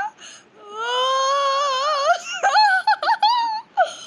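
A high-pitched voice singing a wordless, wavering tune: one long held note, then a run of short notes jumping up and down near the end.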